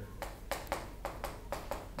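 Chalk striking and clicking against a blackboard as a word is written: a quick run of sharp taps, about four a second.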